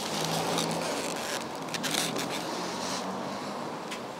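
Paper wrapping of a takeaway fish and chips rustling and crinkling as it is handled, the crinkling strongest near the middle, over a low steady hum.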